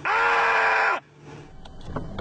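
A loud scream-like 'AUUUGHHHH!' held on one steady pitch for about a second, then cut off abruptly. A few faint knocks follow near the end.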